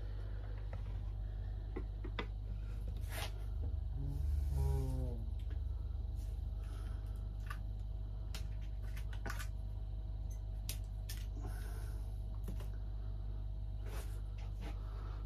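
Scattered small clicks and snips as wire is cut from the branches of an English oak bonsai, over a steady low hum. A brief sliding pitched sound comes about four seconds in.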